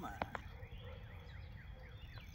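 Faint series of quick, downward-sliding bird chirps over a steady low wind rumble, with two short sharp clicks just after the start.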